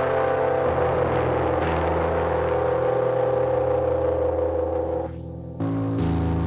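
Sustained notes from a music track played through the iZotope Trash Lite distortion plugin on its 'Busted Robot' preset, giving a thick, gritty distorted tone that reads almost like an engine. The notes change every second or so. Near the end the sound thins and drops in level for a moment before a new chord comes in abruptly.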